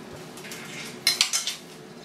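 A spoon clinking against a bowl of cereal and milk: a couple of faint taps, then a quick cluster of louder clinks a little past halfway.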